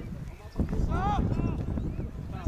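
Shouts of football players across the pitch during play, one long arching call about a second in, over a steady low rumbling noise.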